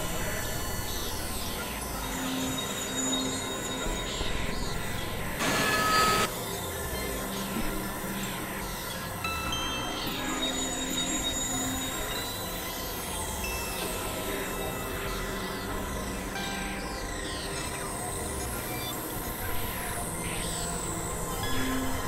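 Experimental electronic synthesizer music: a dense drone of many held tones, crossed by repeated high glides that mostly fall in pitch, with short low notes. A brief loud burst of noise comes about five and a half seconds in.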